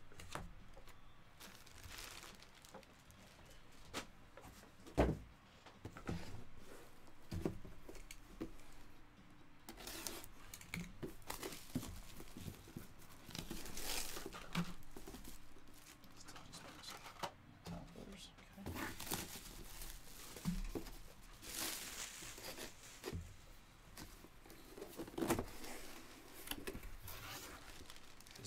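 Clear plastic jersey bag crinkling and rustling as it is handled and torn open, with scattered handling knocks, one sharper than the rest about five seconds in.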